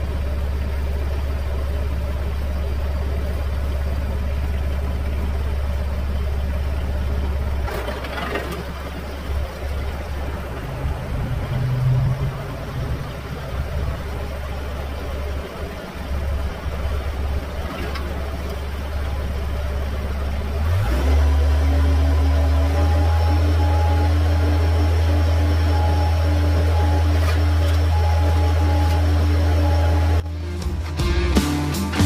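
Tractor-driven PTO wood chipper running: a steady hum at first, then from about 8 seconds in it goes uneven with knocks as brush is fed in and chipped. At about 21 seconds it rises to a louder, steady hum as the chipper's flywheel gets back up to speed.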